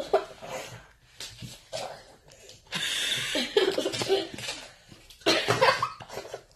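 A boy coughing and laughing in two loud, breathy bursts, the first about three seconds in and the second near the end.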